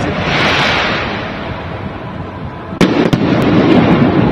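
Aerial fireworks going off: a dense rushing noise for the first couple of seconds, then a sudden loud bang near the end followed by a few quick sharp reports.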